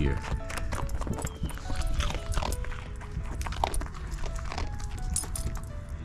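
A small dog chewing and crunching a dog cookie, a string of irregular sharp clicks, over soft background music of single held notes.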